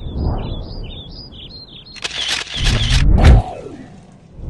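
Birds chirping in a run of short, falling notes, then a sports car's engine revs up and sweeps past about two seconds in, loudest just past the three-second mark before fading.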